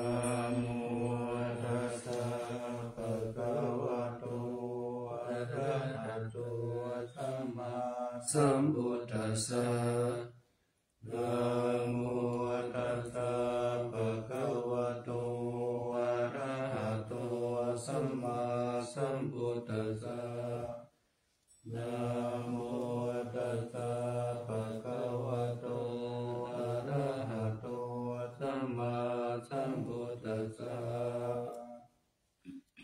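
Buddhist morning chanting in Pali by a monk: one voice recited in a steady near-monotone. It breaks off twice briefly for breath, about a third and two thirds of the way through.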